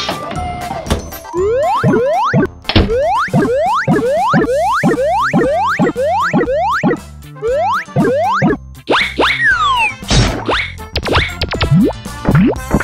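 Cartoon 'boing' sound effects: a quick run of short springy sweeps rising in pitch, about two a second, over children's background music. A few falling swoops near the end break the run before the rising boings resume.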